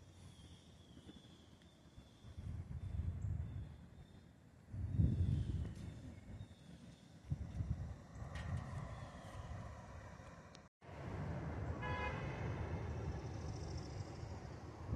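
Wind buffeting the microphone in uneven gusts over the distant hum of city traffic, with a short car horn toot from below near the end.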